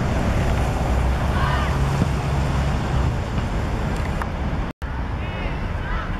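Wind buffeting an outdoor camera microphone, a steady low rumble, with faint distant voices over it. The sound cuts out for an instant near the end.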